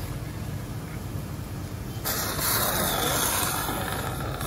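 Surgical suction aspirating in the open chest: a hiss that starts abruptly about two seconds in and continues, over the low hum of operating-room equipment.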